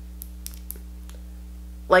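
A few faint, light clicks from a liquid lipstick tube and its applicator wand being handled during a swatch, over a steady low hum.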